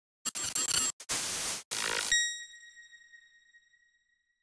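Logo intro sound effect: three short bursts of noise in quick succession, then a bright bell-like ring that fades out over about two seconds.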